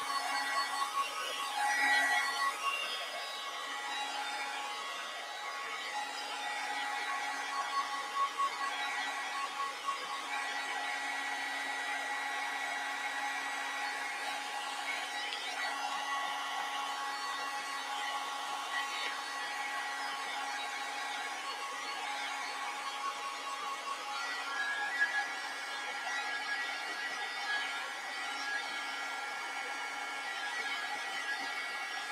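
Craft heat gun blowing steadily over wet acrylic paint to dry it. It gives a steady fan whine that shifts slightly in pitch about three-quarters of the way through.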